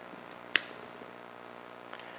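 A single sharp plastic click about half a second in as a four-pin Molex connector on a low-voltage cable is handled, over a faint steady room hum.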